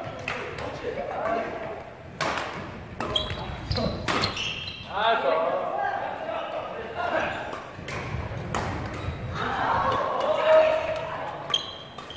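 Badminton rackets striking a shuttlecock: irregular sharp pops scattered through a rally, echoing in a large sports hall, over people talking.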